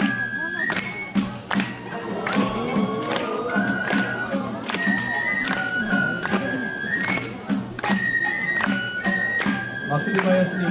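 Japanese festival hayashi music: a flute plays long held notes that step up and down in pitch over a steady beat of drum and percussion strikes, with crowd voices underneath.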